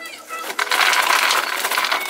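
Popped popcorn poured from a paper microwave-popcorn bag into a plastic popcorn bowl: a dense, loud rattling rush of many small kernels striking the bowl, starting about half a second in and lasting over a second.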